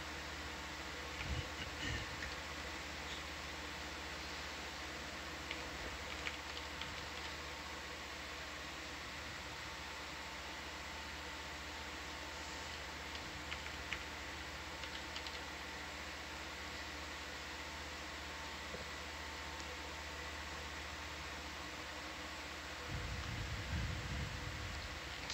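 Steady room tone of electronic equipment: a constant hum and fan-like hiss with a few fixed tones, broken by scattered faint clicks. A low rumble comes up near the end.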